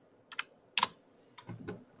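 A few separate keystrokes on a computer keyboard, the loudest just under a second in.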